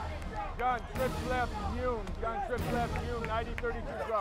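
Several men's voices talking and calling out over one another, too overlapped to make out words, over a steady low background din.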